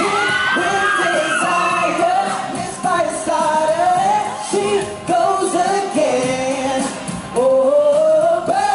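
Male pop vocal group singing in close harmony into microphones: several voices hold sustained notes and glide between pitches together.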